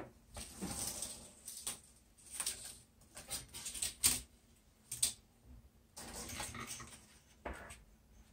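Polyester tennis string being pulled through the grommet holes of a racquet frame: irregular swishing and rustling runs as the string slides through, with a few sharp light clicks.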